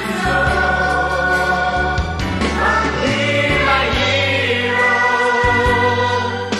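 A song: sung vocals carrying a slow melody over a backing band with a steady bass line.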